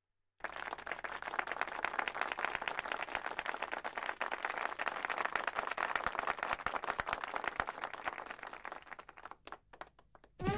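Audience applauding, a dense patter of many hands that begins about half a second in, thins to a few scattered claps and stops near the end.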